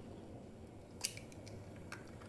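A hen's egg cracked open: one sharp crack about halfway through, then a few faint ticks near the end as the shell is pulled apart over a ceramic bowl.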